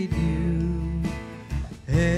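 Live worship band music: electric bass and drums under a man singing held notes at a microphone. The music thins out briefly near the end before the next phrase comes in.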